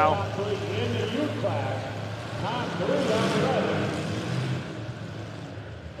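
Demolition derby car engines running, a steady low drone that is strongest in the first half and fades toward the end.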